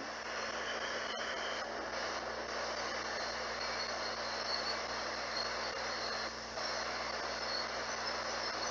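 Spirit box (ghost box) scanning through radio frequencies: a steady hiss of radio static, with a faint click about a second in.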